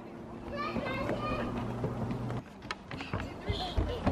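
Faint, distant voices of a child and other people, with a few low thuds near the end.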